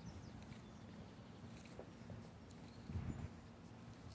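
Faint footsteps on asphalt over a low rumble of wind on the microphone, with one louder gust about three seconds in.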